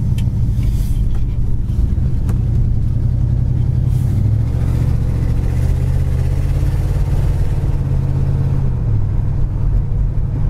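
The 1968 Pontiac GTO's 400 four-barrel V8, heard from inside the cabin as the car drives off. Its pitch climbs in steps under acceleration and then drops shortly before the end as the transmission shifts up.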